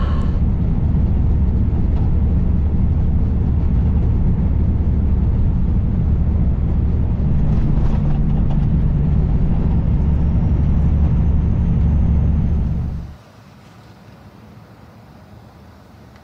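Kenworth semi truck driving at highway speed, heard from the cab: a steady low diesel engine and road rumble. It cuts off about 13 seconds in, leaving a much quieter background.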